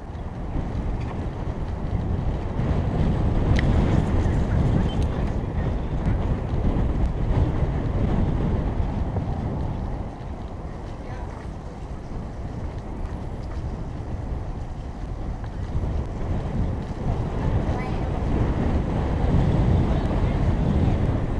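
Wind buffeting the microphone of a camera on a moving bicycle: a steady low rumble that is louder for the first several seconds, eases off in the middle and rises again near the end.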